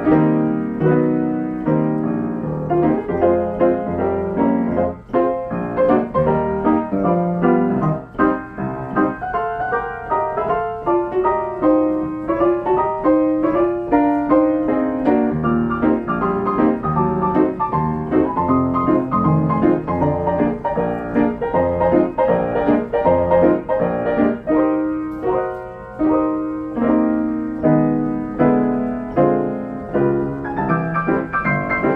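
1925 Steinway XR Duo-Art reproducing grand piano playing by itself from a paper roll, its keys worked pneumatically to recreate a pianist's recorded performance: a continuous solo of melody over chords.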